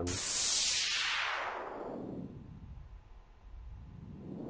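Synthesized noise swept through an automated EQ filter in FL Studio: a hiss whose bright band slides steadily down over about three seconds and then starts rising again near the end. The same sound is also automated to pan back and forth between left and right.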